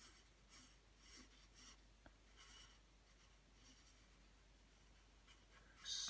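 Wooden graphite pencil scratching on drawing paper: about six short, faint strokes over the first four seconds.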